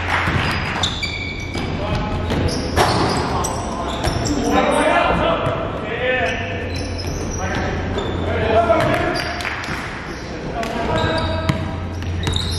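A basketball bouncing on a gym floor during live play, with players' voices calling out, echoing in a large gymnasium.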